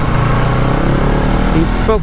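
Motorcycle engine running steadily while riding, with road and wind noise on the camera's microphone.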